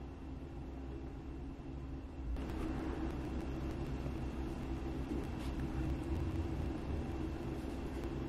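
Steady low background hum and rumble with a faint hiss, growing slightly louder a few seconds in, with no distinct events.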